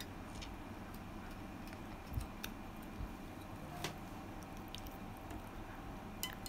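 Faint, scattered light clicks and ticks of a badminton racket's strings and a flying clamp being handled during stringing.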